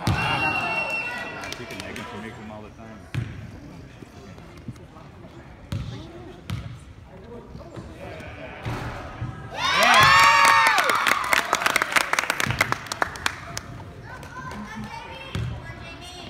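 High-pitched cheering and shrieking from a group of girls, loudest in a burst with rapid clapping from about ten seconds in that lasts around three seconds. A basketball bounces on the hardwood floor a few times in between.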